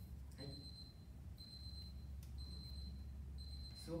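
Digital timer's alarm beeping: a high, steady tone repeating about once a second, each beep lasting most of a second. The alarm signals that the set time is up.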